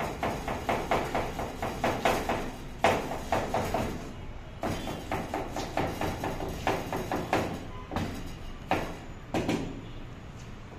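Chef's knife chopping an onion on a plastic cutting board: steady knocks about three a second, a brief pause about four seconds in, then further strokes that come more widely spaced near the end.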